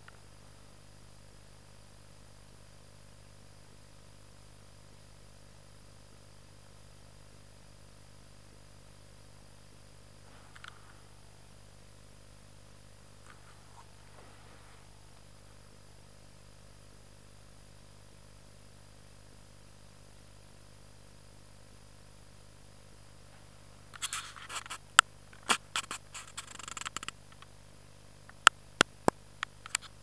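Faint steady background hiss, then in the last six seconds close rustling and scraping near the microphone with a run of sharp clicks, about seven of them, from handling of gear close to the camera.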